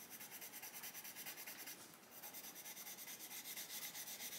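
A Derwent Lightfast coloured pencil rubbing on paper in quick, even back-and-forth strokes, with a short break about two seconds in. It is laying a light blue thickly over darker blue in the sky, blending and burnishing the layers below.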